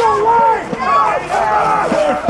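Spectators on the sideline talking and calling out, several voices overlapping.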